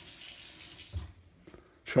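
Water running briefly, stopping about a second in, followed by a soft low knock.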